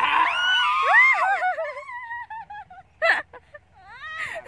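A woman shrieking and squealing in fright, her pitch swooping up and down through the first two seconds, then a short sharp cry about three seconds in.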